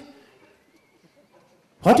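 A man's voice trails off, then about a second and a half of quiet hall room tone, then he speaks again with a sharp, rising exclamation near the end.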